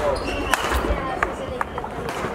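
Badminton play in a sports hall: several sharp knocks of rackets striking a shuttlecock, and court shoes squeaking and thudding on the floor, with chatter in the hall behind.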